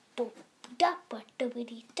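A child singing short 'da da' syllables, about four of them with small gaps between, unaccompanied.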